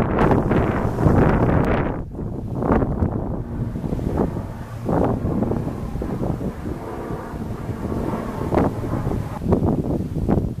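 Wind buffeting the microphone in gusts, a rough rumbling noise that swells and drops, loudest in the first couple of seconds.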